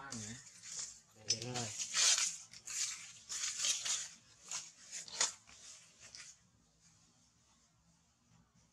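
Dry leaves rustling and crackling in irregular short bursts for about six seconds, then stopping.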